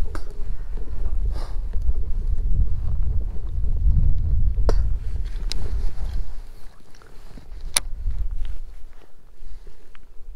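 Wind buffeting the microphone, a heavy rumble that swells through the middle and eases off toward the end, with a few sharp clicks from handling the baitcasting rod and reel.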